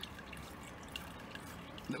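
Faint handling of a brass pressure-washer unloader valve as its adjusting nut is unscrewed by hand: a few small ticks over a low, steady background hiss.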